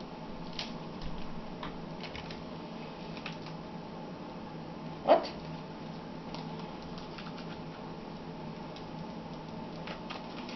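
Faint scattered clicks and crinkles of fingers picking at the plastic wrapping on a new iPod Touch, over a steady low hum. A short exclaimed "What?" about halfway through is the loudest sound.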